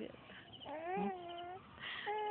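Baby giving one drawn-out, wavering, high-pitched cry-like vocalization of about a second, beginning partway in.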